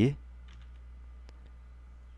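A few faint, sharp clicks from typing on a computer keyboard, over a steady low electrical hum.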